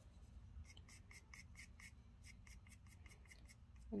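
Faint, quick scratching of a pointed scratch tool scoring the base of a clay cup, about five short strokes a second starting about a second in. It is roughening the clay so that the stem will adhere with slip.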